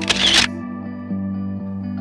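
A camera-shutter click sound, about half a second long at the very start, the loudest thing heard, over soft background music holding sustained notes.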